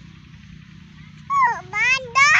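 A small child's high-pitched voice: two short vocal sounds from about a second and a half in, the first falling in pitch and the second rising, over a low steady background hum.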